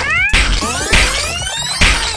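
Comic sound effects dubbed over a slapstick beating with a leafy branch. There are about four sharp hits, each followed by a cluster of tones sliding down in pitch.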